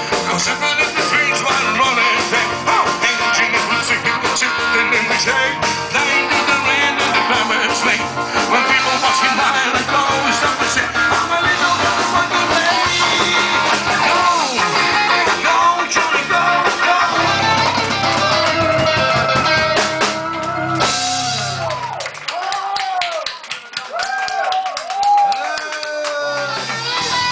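Live cover band playing an instrumental passage on electric guitars, keyboard, bass and drum kit. About 22 seconds in, the bass and drums drop out, leaving a lead line of sliding, bending notes before the full band comes back in.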